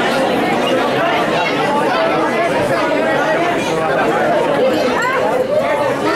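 Crowd chatter: many people talking at once around a boxing ring in a large hall, with no single voice standing out.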